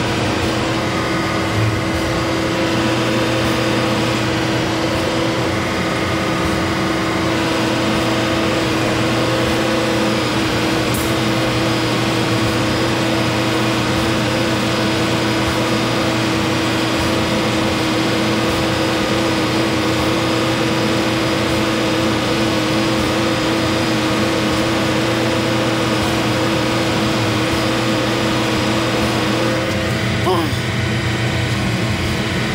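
Diesel engine of a heavy equipment machine running at a steady speed, a constant hum with a fixed whine over it.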